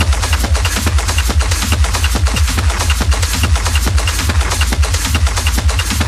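Techno DJ mix with a steady, driving beat and heavy deep bass, with a short high blip repeating about twice a second.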